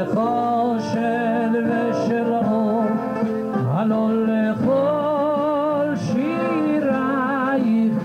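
A male singer's amplified voice singing live through a microphone: long held notes with a strong wavering vibrato and ornamented turns, in the Middle Eastern (Mizrahi) vocal style, over instrumental accompaniment.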